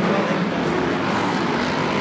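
Several stock car racing engines running together on track, a steady engine drone with no single car standing out.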